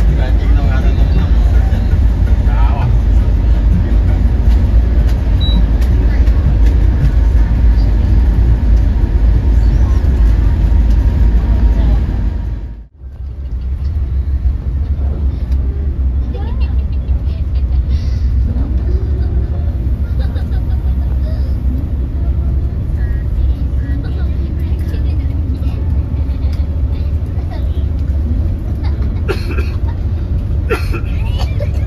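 Steady low rumble of a long-distance coach bus cruising at speed, engine and road noise heard from inside the cabin, with faint voices underneath. The rumble cuts out briefly a little under halfway through, then carries on.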